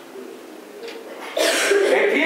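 A person coughs about a second and a half in, a sudden loud, rough burst after a quieter lull.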